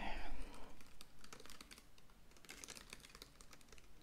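Laptop keyboard being typed on with fingernails, close to the microphone: quick, irregular key clicks.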